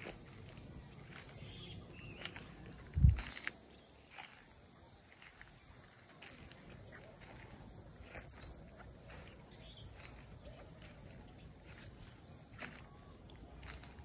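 Insects trilling steadily in a high, finely pulsing chorus, with one dull thump about three seconds in.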